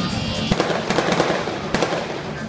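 A series of sharp cracks or pops, one about half a second in, a cluster around a second in and two more near the end, over loud show music.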